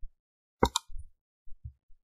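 A couple of sharp clicks a little over half a second in, followed by a few faint low thumps: clicks and taps at a computer while code is entered in the editor.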